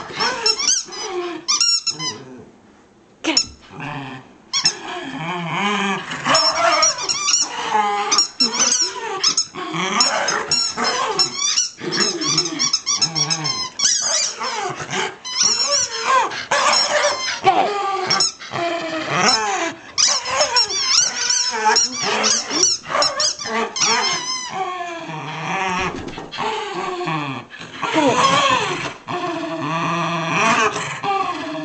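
A corgi and a Shiba Inu growling in play as they tug at a toy between them, with high wavering squeaks mixed in throughout and a brief lull a few seconds in.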